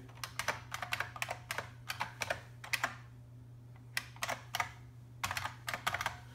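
Typing on a computer keyboard: quick runs of keystrokes, with a pause of about a second midway before the typing resumes.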